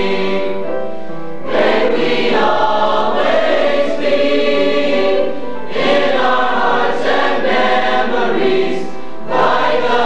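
A school choir singing held chords in phrases, with fresh entries about a second and a half in, near the middle, and just before the end.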